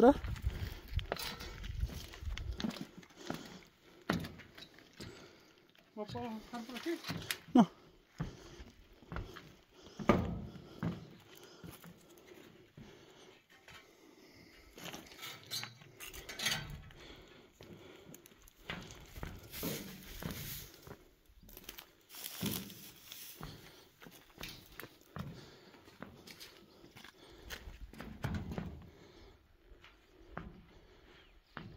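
Footsteps scuffing over dry, rocky ground and brush, with scattered crunches and rustles, and a short muffled voice about six seconds in.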